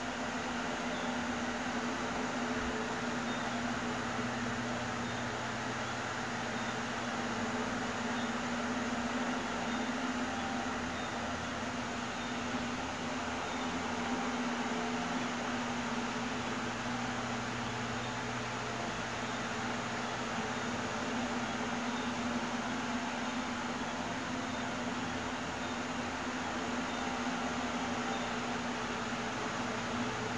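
A steady hum over an even hiss, holding one pitch and level without a break.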